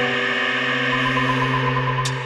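Live band music: a sustained drone of held tones, with a sharp hit right at the start and a higher note coming in about halfway through.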